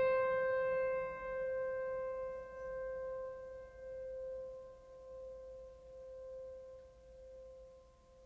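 A single sustained piano note, struck just before, ringing on and slowly fading, its loudness wavering as it dies away.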